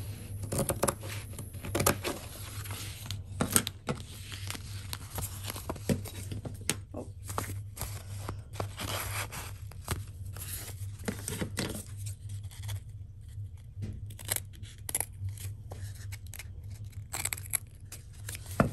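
Fabric scissors cutting through fusible interfacing: a run of irregular sharp snips and short slicing strokes, with the sheet rustling as it is handled.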